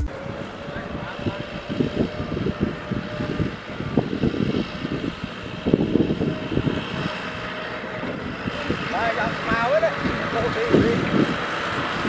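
Kubota M6040SU tractor's diesel engine running as the tractor drives along, with wind on the microphone. Voices are heard faintly in the background about three-quarters of the way through.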